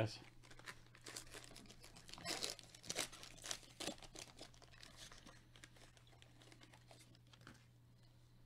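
Foil wrapper of a Panini Donruss basketball trading-card pack being torn open and crinkled, a quick run of crackling tears that is loudest a couple of seconds in, then fainter rustling as the cards are slid out.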